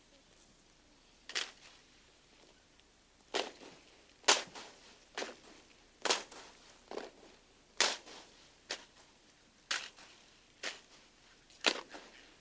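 Rifle drill by a silent drill platoon: sharp slaps and clacks of hands and M1 Garand rifles, in unison, about one a second, beginning a little over a second in. No commands or music between the strikes.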